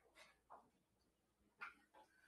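Near silence: room tone, with a few faint, very short sounds.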